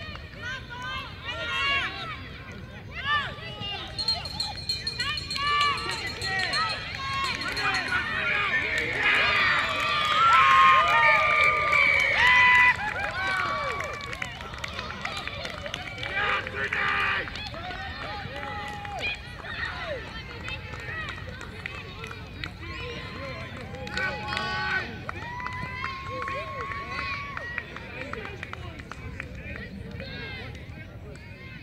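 Several high-pitched voices, children and spectators, shouting and calling out across an open sports field, overlapping and unscripted. The shouting is loudest around ten seconds in.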